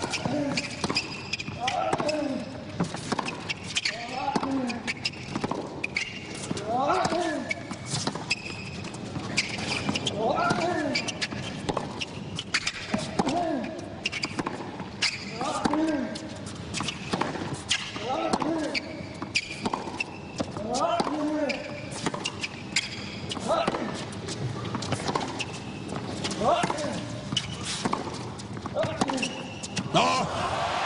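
Tennis rally on a hard court: repeated sharp pops of racket strings striking the ball and the ball bouncing, with a short falling grunt from a player on many of the shots, every second or two.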